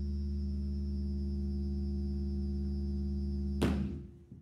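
ARP 2600 synthesizer holding a steady drone of several stacked low tones with a thin high whistle above them. Near the end a sharp, noisy crack cuts in and the drone starts to die away.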